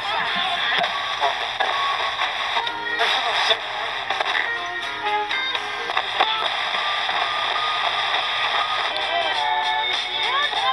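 The Aiwa CS-P500 mini boombox's radio playing music and voices through its small built-in speakers, thin with little bass. The sound shifts abruptly a few times as the tuner is worked.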